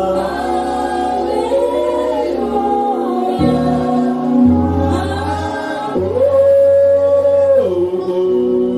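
Church congregation singing a slow worship song together, the voices holding long notes and gliding between them over sustained low notes.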